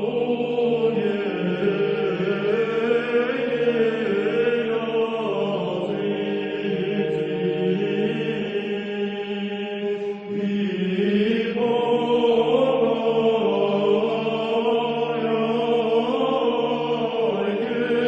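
A group of voices singing a slow sacred song together, with long held notes.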